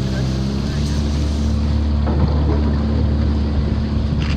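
Outboard motor of a narrow wooden river boat running steadily under way, a constant low engine drone with a rush of wind and water noise over it.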